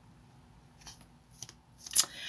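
Tarot cards being handled: a few soft brushing sounds about a second in and again half a second later, then a sharper snap at the end.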